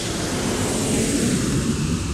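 Edited-in pass-by sound effect: a rushing, rumbling noise that swells to its peak about a second in and then fades away.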